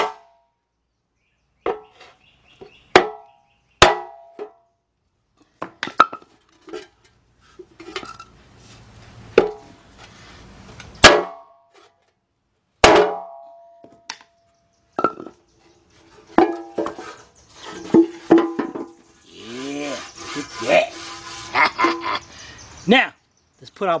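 Hammer blows on a wooden 4x4 block standing in a steel oil pan, knocking down a hump in the pan's bottom. There are several sharp strikes a few seconds apart, the pan ringing briefly after the hardest ones.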